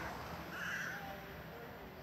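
A bird's single harsh call about half a second in, over steady faint outdoor background noise.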